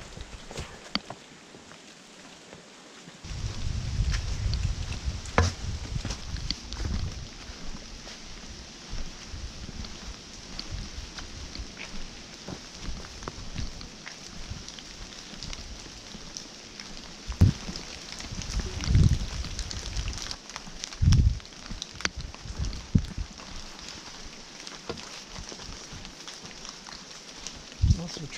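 Footsteps and a wooden walking stick on a leaf-strewn, rocky trail: irregular crunches and thuds, with a run of heavier thuds past the middle. Low rumble on the microphone about three seconds in, over a steady faint hiss.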